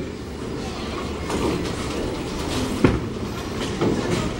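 Bowling balls rolling down wooden alley lanes with a steady low rumble, and a sharp knock near the end as a ball is released and lands on the lane.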